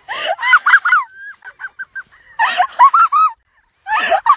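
Shrieking, honk-like laughter from a person: bursts of four or five sharp high-pitched cackles with squeaky wheezing pulses between them.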